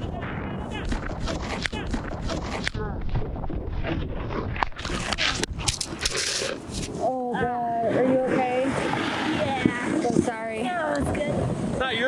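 Snowboard scraping and chattering over packed snow, with wind on the microphone. About six seconds in comes a hard fall: the board slams and slides through the snow. For the last few seconds a person's voice is heard.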